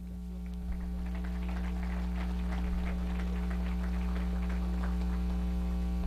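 Steady electrical mains hum with its overtones, with faint scattered clicks and taps over it from about half a second to five seconds in.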